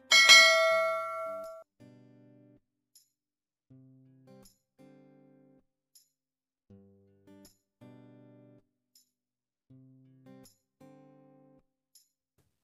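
A bright bell-like chime rings out right at the start and fades over about a second and a half. After it, soft plucked-guitar background music plays at a low level.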